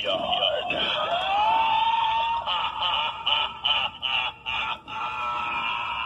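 Tinny electronic sound effect from the small speaker of a battery-operated light-up Halloween carriage decoration, set off by its try-me button. It starts as sliding, wavering tones with one rising glide, then turns into a run of quick pulses about three a second.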